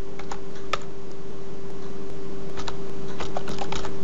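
Computer keyboard keys clicking as a password is typed: a handful of keystrokes at uneven intervals, bunched near the end. A steady low hum runs underneath.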